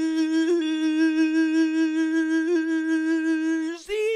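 A man's voice holding one long, steady hummed or sung note with a slight wavering, like a drawn-out flourish. It breaks off just before the end, followed by a brief higher note.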